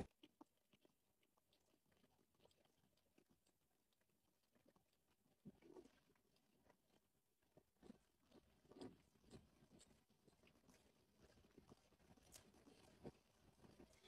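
Near silence, with faint, irregular clicks scattered through it.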